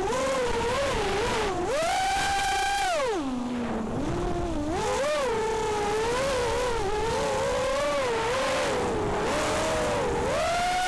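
Armattan F1-4B racing quadcopter's Cobra 2204 2300kv brushless motors and propellers whining, the pitch rising and falling constantly with the throttle. About two seconds in the pitch climbs and holds high for about a second, then drops low for a moment before coming back up and wavering.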